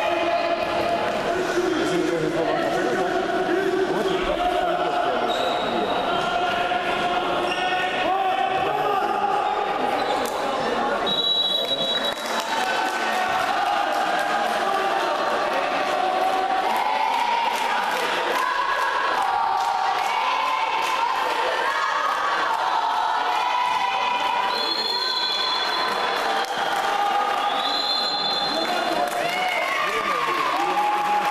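Indoor handball play in a reverberant sports hall: the ball bouncing on the court, with voices calling out and shouting throughout.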